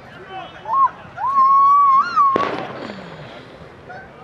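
A person's voice holds one long, high call for about a second, rising at the start and lifting again near the end. It breaks off in a sudden loud rush of noise about two and a half seconds in.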